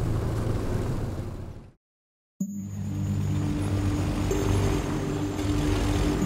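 Three-wheeled cargo motorcycle's small engine running steadily, fading out to a brief dead silence just under two seconds in; a steady low drone starts again about half a second later.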